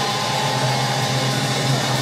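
Steady, droning wash of distorted electric guitar and amplifier noise: a held chord ringing on with no drum beat.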